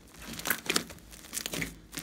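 Fluffy slime studded with small foam beads being pressed and squeezed by hand, giving irregular short crackles and squelches, about half a dozen in two seconds.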